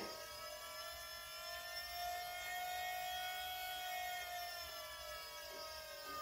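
Volvo electro-hydraulic power steering pump running with a steady, many-toned electric whine, the sound the owner says belongs in a robot movie. Its pitch rises slowly over the first few seconds and then eases back down as the pump's speed is changed on the fly.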